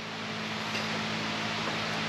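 Steady hiss of a large shop floor fan, with a faint low hum underneath.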